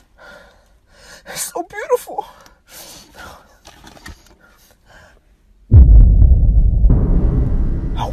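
Small clicks and crinkles of someone eating chicken tenders from a cardboard box, with a few short breathy vocal sounds. About five and a half seconds in, a sudden loud deep boom starts and rumbles on, slowly fading.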